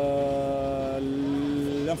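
A speaker's long, drawn-out hesitation "euh": one vowel held steady at speaking pitch, dipping slightly about a second in, before speech resumes near the end.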